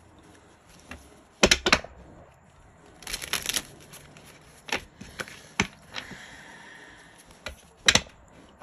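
A deck of cards being shuffled and split by hand. There are short bursts of card noise about a second and a half in and again around three seconds in, then scattered single snaps and taps.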